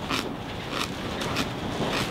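Crisp raw storage cabbage being chewed close to the microphone: three crunches in an even chewing rhythm. The crunch shows the cabbage is still crispy after about seven months in a root cellar.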